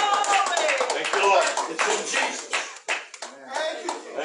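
Congregation clapping, with a run of sharp hand claps and voices calling out over them.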